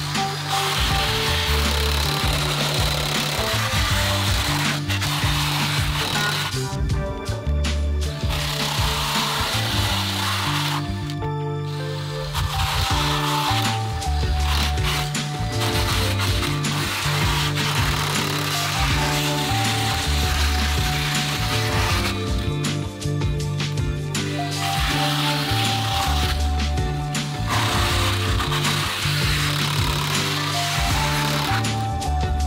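Background music over a drill spinning a wire-brush wheel that scrubs into cured black expanding foam, a coarse grinding rasp that stops and starts again several times.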